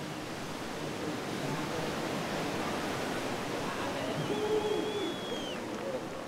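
Ocean surf: a wave breaking and whitewater rushing in a steady wash, with faint voices in the background.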